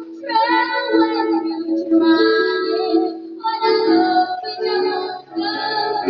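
A young girl singing a pop ballad into a handheld microphone over backing music, in held notes with short breaks between phrases.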